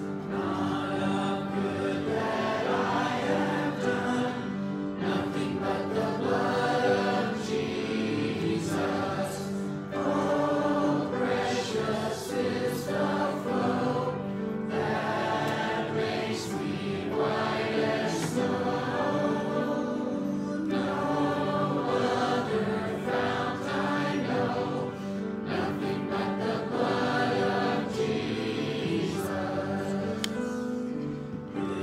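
A church congregation singing a hymn together, many voices holding long notes at a steady pace.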